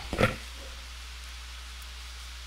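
A person's brief cough just after the start, then a steady low hum.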